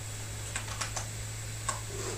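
A few scattered clicks of a computer keyboard, about four in all with the sharpest near the end, over a steady low electrical hum.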